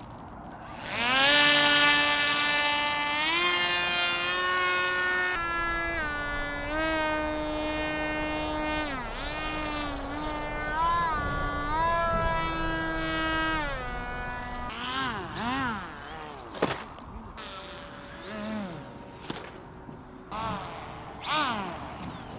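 Electric motor and propeller of a small thin-foam RC F-22 model plane whining in flight: a loud buzzing tone that starts abruptly about a second in as the plane is hand-launched, then steps and wavers in pitch with throttle changes. In the last third the tone swoops up and down repeatedly as the plane passes close.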